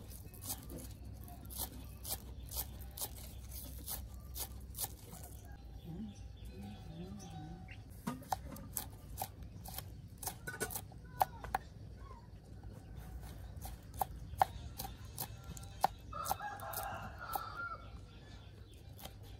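Large kitchen knife chopping herbs and chillies on a thick round wooden chopping board: a quick, uneven run of sharp knocks. A chicken clucks about six seconds in, and near the end a rooster crows once.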